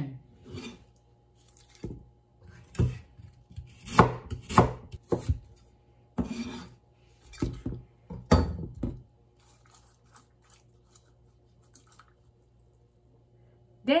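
A kitchen knife scraping sliced lotus root across a cutting board and the slices dropping into a stainless steel bowl of water: a series of irregular knocks and scrapes, roughly one a second, stopping about nine seconds in.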